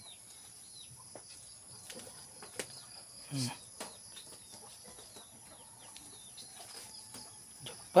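Faint, steady high-pitched insect chirring, with light clicks and rustles of a hand sorting freshly caught fish in a metal mesh basket. A short hummed voice comes about three and a half seconds in.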